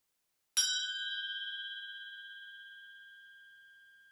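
A bell chime sound effect, struck once about half a second in, ringing with a clear tone and fading slowly.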